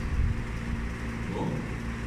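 Steady low machine hum in the room during a pause in speech, with a faint brief sound about one and a half seconds in.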